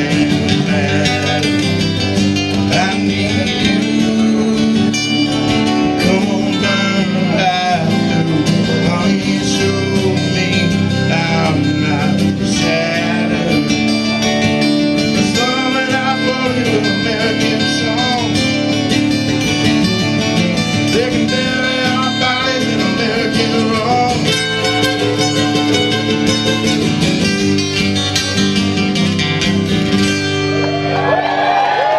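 Live Americana song played on acoustic guitars, with singing.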